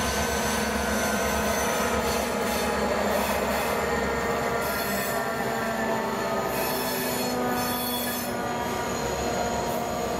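Freight train led by two XR-class diesel-electric locomotives running past, the locomotives' engines going by in the first part and loaded container wagons rolling past after them. Steady metallic wheel squeal rides over the low rumble of the train throughout.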